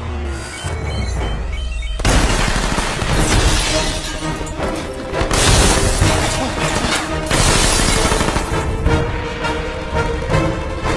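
Action-film soundtrack: a low rumble, then a sudden loud burst about two seconds in of crashing and shattering effects under a dramatic music score that carries on throughout.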